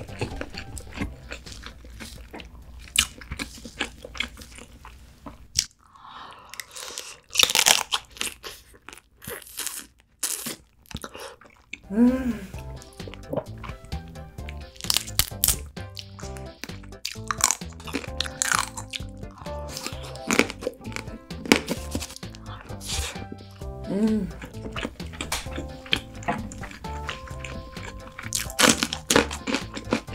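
Close-miked crunching and chewing as pieces of soy-marinated raw crab (ganjang gejang) are bitten into and eaten, over light background music. The music drops out for a few seconds in the middle, where the crunches are loudest.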